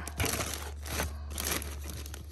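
Plastic bulb bags and their paper packet cards crinkling and rustling as a hand sorts through them in a cardboard box, in irregular bursts.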